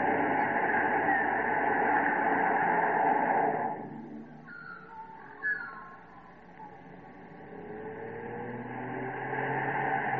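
Car engine and tyre noise on a country road, loud at first and dropping away suddenly about four seconds in. In the quieter stretch come a few short chirps and a single click, then a car engine grows steadily louder again, its pitch climbing as the car approaches.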